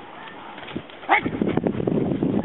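Doberman lunging and biting at a handler's jute bite pillow in protection training. It is quiet at first, then about halfway through comes a short high cry, followed by a loud burst of rough dog vocalizing and scuffling.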